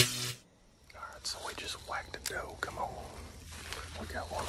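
A rifle shot, already under way as the sound begins, cutting off within about half a second. Then hushed whispering from about a second in.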